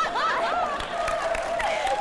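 People laughing loudly on a studio set, mixed with hand clapping.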